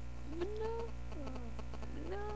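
A woman's voice making a short rising squeal, then a falling one, over a steady low hum.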